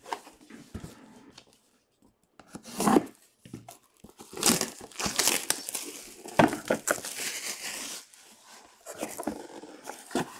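Trading-card box packaging being torn and crinkled open by hand: irregular rustling and ripping, with a sharp tear about three seconds in and the busiest stretch through the middle.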